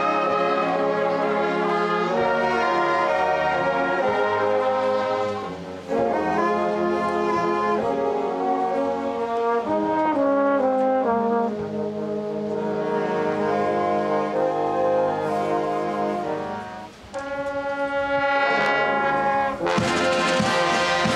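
Marching brass band of trumpets, trombones, euphoniums and sousaphones playing slow, held chords, with two short breaks between phrases, one about six seconds in and one near the end. A drum stroke comes right at the end.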